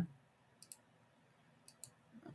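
Computer mouse buttons clicking: two quick double clicks about a second apart.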